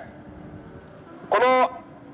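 A pause in a man's speech into a microphone, with only faint low street noise under it. About one and a half seconds in he says one short word.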